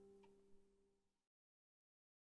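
A plucked setar note ringing out faintly and dying away, gone a little over a second in.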